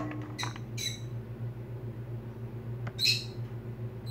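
A few short, high-pitched squawking calls, like a bird's: two near the start and a louder one about three seconds in. They sit over a steady low hum.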